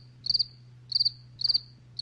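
Cricket chirping sound effect: short high chirps about twice a second, each a quick trill of a few pulses, over a faint low hum. This is the comic "crickets" cue for an awkward silence after a line.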